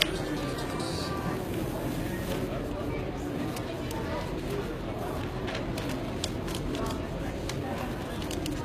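Steady background chatter of a crowded exhibition hall. From about two seconds in there is light, scattered rustling and crinkling of paper as sheets are pressed and rubbed onto a freshly heat-pressed T-shirt to draw the heat out of the transfer.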